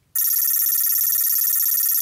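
A steady high-pitched electronic tone with a fast, even warble, like a phone ringtone, starting suddenly just after the start.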